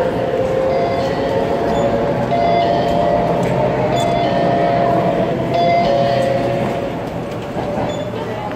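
Electric commuter train at the platform, running with loud steady noise and a whine of held tones that step up and down in pitch. A few light clinks sound over it, and it eases off near the end.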